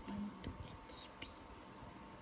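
Soft whispering, with light taps and brushes of long fingernails on the plastic-wrapped box of an iPad.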